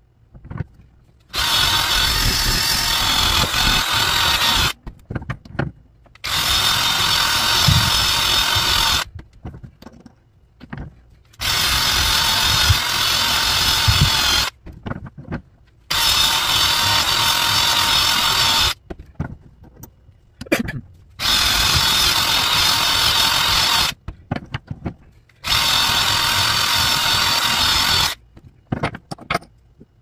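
Cordless drill spinning a wire wheel brush against a cast copper coin clamped in a bench vise, scrubbing the scale off its face. It runs in six bursts of about three seconds each, with clicks and knocks in the pauses between them.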